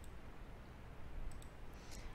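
A few faint clicks of a computer mouse, one at the start and two more a little past the middle, over low room noise.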